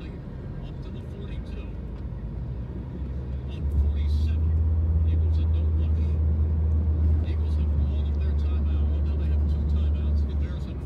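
Low, steady engine and road rumble heard from inside a moving car, growing clearly louder about four seconds in.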